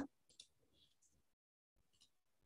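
Near silence, with a few faint, brief clicks in the first second.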